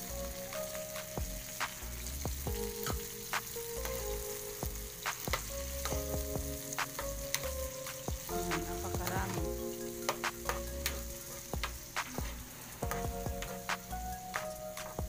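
Chicken sizzling in a wok as sliced green chilies are added and stirred in, with irregular clicks and scrapes of a spatula against the pan.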